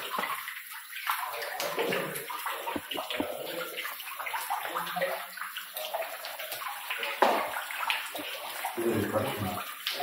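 Water pouring from a hole in the rock ceiling into a full tank, a steady splashing into the water surface.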